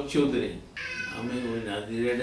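A high-pitched, drawn-out call starting a little under a second in and lasting about a second, heard over a man speaking.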